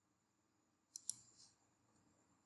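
Two quick, faint computer mouse-button clicks about a second in, with a softer click just after.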